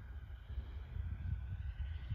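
Wind buffeting the microphone, with the faint, steady whine of a distant electric ducted-fan model jet held at a little throttle on its landing approach.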